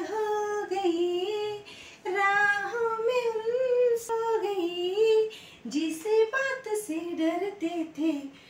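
A woman singing a song solo, unaccompanied, in long held notes that slide up and down in pitch, with short pauses between phrases.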